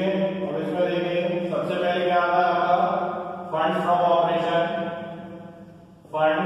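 A voice chanting in long held tones: two sustained notes of about three seconds each, each beginning suddenly and then fading.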